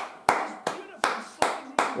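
A person clapping their hands in excitement: five even, sharp claps at close to three a second, each with a short echo of a small room.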